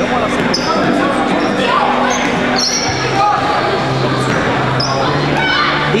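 Dodgeballs bouncing and striking the hardwood gym floor and walls, with players' voices calling out, echoing in a large gymnasium.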